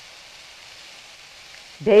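Sliced zucchini, yellow squash and red pepper sizzling steadily in oil in a wok, a soft even hiss of stir-fry cooking.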